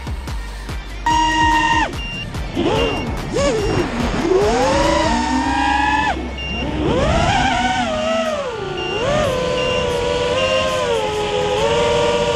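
Whine of an FPV racing quadcopter's brushless motors (Lumenier 2206 2350KV on an AstroX X5 with 5-inch props), its pitch rising and falling with the throttle from about a second in and holding steadier near the end. Background music with a steady beat plays under it.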